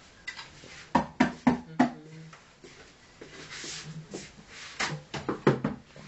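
Small hand drum struck with the bare hands in loose, uneven beats: a quick run of four or five strikes about a second in, then another cluster near the end, with softer taps between.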